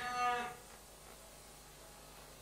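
A moo can toy lowing, one pitched moo that ends about half a second in, followed by a faint steady hiss.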